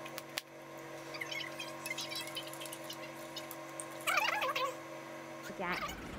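Quiet room with a steady electrical hum and a couple of small clicks near the start. A short voice sound comes about four seconds in.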